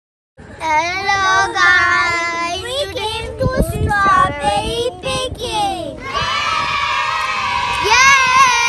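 Several children's voices singing together, starting about half a second in, with wavering pitch and a long held note from about six seconds in.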